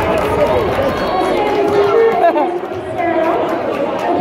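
Crowd chatter: many voices talking at once, steady and loud, with no single voice standing out.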